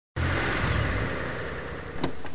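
Car engine sound effect: an engine running with a heavy low rumble, starting suddenly and slowly dying away.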